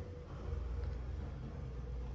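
Steady low hum inside a hydraulic elevator cab, with a faint higher steady tone above it and no sudden sounds.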